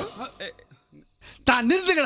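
Crickets chirping at night behind men's voices: a few short vocal sounds, then a loud call about one and a half seconds in.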